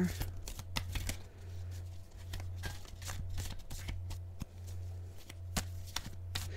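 A tarot deck being shuffled and handled by hand off camera: irregular soft card clicks and slaps. A steady low hum runs underneath.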